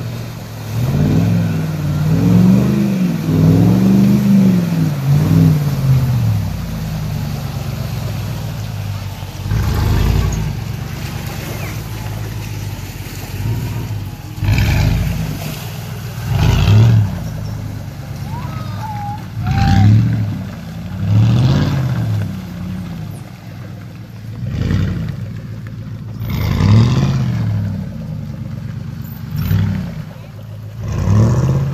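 Ford F-150 pickup's engine revving hard in repeated bursts, each rising and falling in pitch, as its tyres spin and throw mud through a deep muddy rut. A long stretch of revving in the first few seconds, then about eight shorter bursts a couple of seconds apart.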